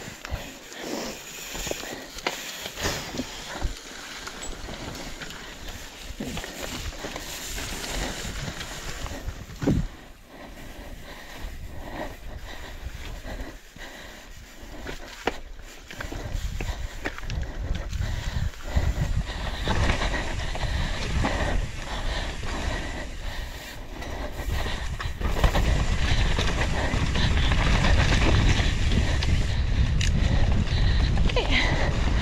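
Downhill mountain bike ridden fast over a rough dirt track, heard from a camera on the bike or rider: frequent knocks and rattles of the bike over bumps and roots, with tyre noise on dirt. From about halfway, wind buffets the microphone as the speed rises, loudest near the end.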